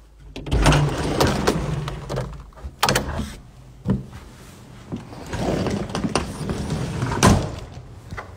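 Home elevator running, with a noisy rumble and several sharp clunks and knocks from the cab and its sliding door.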